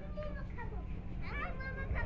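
High children's voices calling and talking, strongest in the second half, over a steady low rumble.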